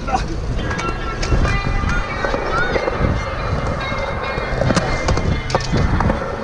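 Skateboard wheels rolling on concrete, a steady low rumble with a few short clacks of the board, with music playing over it.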